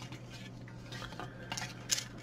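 Faint clicks and rattles of a plastic housing and circuit board being handled as the board and its frame are lifted out of a touchscreen weather display, with a few sharper clicks near the end.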